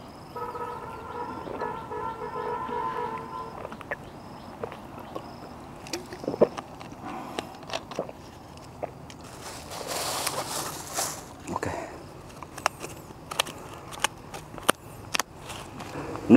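A distant horn sounds one long steady note for about three and a half seconds near the start, over a light outdoor background with scattered clicks. A short hiss comes about ten seconds in.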